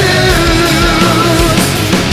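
Heavy rock band playing: a held, wavering lead note over driving drums and bass, ending about a second and a half in.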